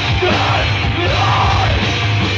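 Live heavy rock band playing loud, with electric guitar, bass and drums, and the singer yelling into the microphone in a bending, drawn-out line.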